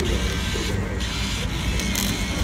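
Motorised banknote acceptor of a ticket vending machine running as a banknote is fed into its slot.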